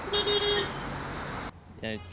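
A car horn honks for about half a second near the start over steady street traffic noise. The traffic noise cuts off abruptly about one and a half seconds in.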